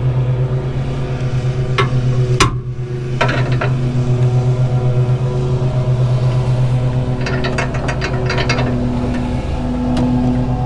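Ratchet wrench with a deep socket working the mounting nut of a truck's steering damper: scattered metal clicks, a sharp clink about two and a half seconds in, and a quick run of ratchet clicks between about seven and eight and a half seconds. Under it, and louder throughout, is a steady low engine-like hum with an even pulse.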